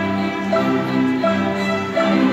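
Beginner-level string ensemble playing together, bowing held notes that change about every two-thirds of a second.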